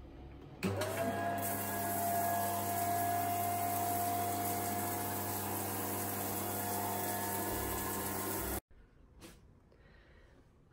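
Triton T90z electric shower starting up: a quick rising whine settles into a steady tone over a low hum, with water spraying from the shower head. The sound stops suddenly near the end.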